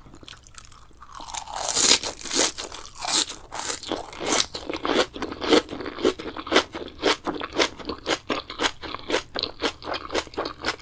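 Close-miked chewing of a mouthful of raw green sprouts and shredded vegetables, crisp and crunchy. It starts about a second in and settles into a steady rhythm of about three crunches a second.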